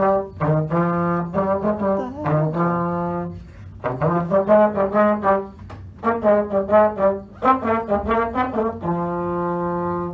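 Slide trombone played solo: a few short phrases of separate notes with brief pauses between them and a couple of slides in pitch, ending on a long held note.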